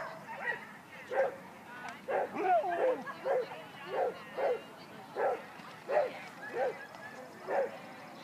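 A dog barking in a string of short barks, about one or two a second, starting about a second in and stopping near the end.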